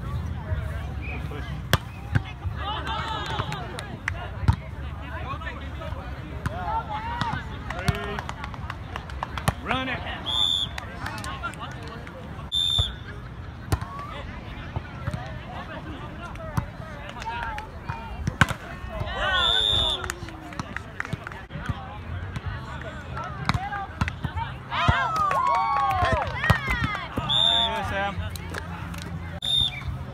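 Outdoor volleyball rally on grass: sharp smacks of the ball being hit, and players calling and shouting. A few short, shrill, whistle-like tones cut through, over a steady low rumble.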